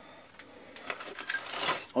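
Faint rustling and a few light clicks and taps of handling, growing slightly louder near the end.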